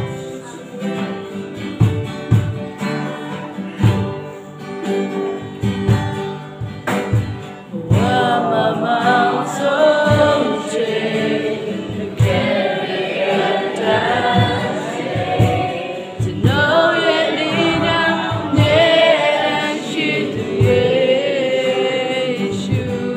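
Live worship song played on two acoustic guitars with a cajon keeping the beat; singing voices come in about eight seconds in and carry on over the band.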